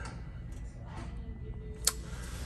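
A single sharp click near the end, over a low steady background hum.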